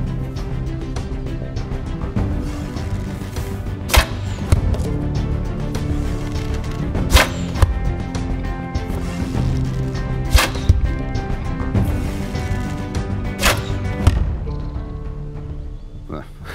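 War-bow arrows shot at a body-armour target: four sharp thwacks about three seconds apart, over background music.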